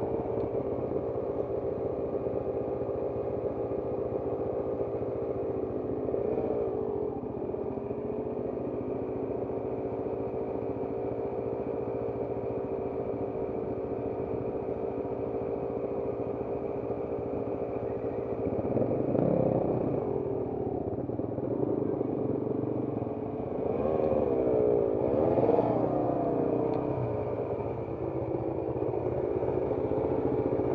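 Trail motorcycle engines ticking over steadily, with a few short blips of the throttle that briefly raise the pitch, two of them close together in the last third.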